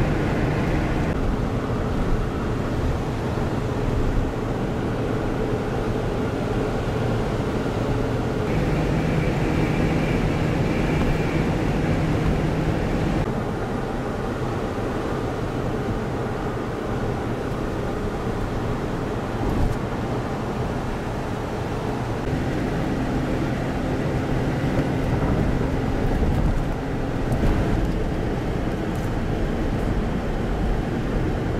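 Steady road noise of a car driving at expressway speed, heard inside the cabin: a continuous rumble of tyres and engine with a faint hum that shifts pitch a couple of times.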